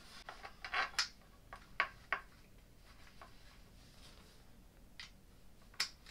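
A handful of short, light clicks and taps as a wooden crib rail and small metal assembly hardware are handled, bunched in the first two seconds, then two more near the end, the last the sharpest.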